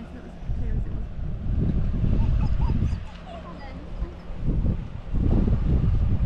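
Wind buffeting the microphone, with a dog giving a few short high cries about two seconds in and faint distant voices.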